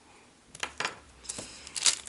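A small rhinestone-studded metal charm dropped onto a table, clattering in a few light clicks about half a second in and again near the end, the loudest near the end. The fall knocks one tiny rhinestone loose.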